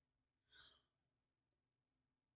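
Near silence, with one brief faint breath about half a second in.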